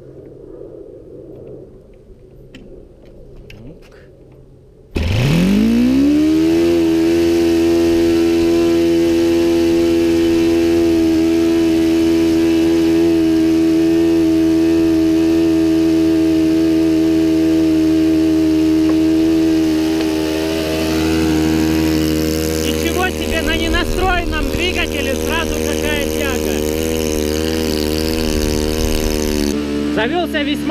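Four-stroke glow-plug model aircraft engine with a large propeller catching about five seconds in, revving up quickly and then running at a steady, even pitch, its speed dipping slightly later on.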